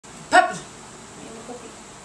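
A small dog gives one short, high-pitched yip, with a fainter sound about a second later and the steady hiss of an electric fan underneath.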